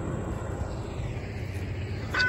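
Low, steady rumble of a distant diesel freight train approaching, led by an EMD GP40-2 locomotive.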